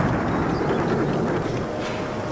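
A loud, noisy rumble that slowly fades, with a faint held tone coming in near the end.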